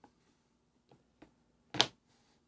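A few faint clicks and one sharper click near the end, from a miniature and paintbrush being handled at a painting desk.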